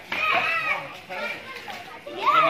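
Children's voices shouting and chattering as they play, loudest in the first half-second and then dropping away.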